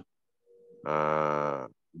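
A man's voice holding a drawn-out hesitation filler, a single steady "uhh" lasting under a second, in a pause between phrases.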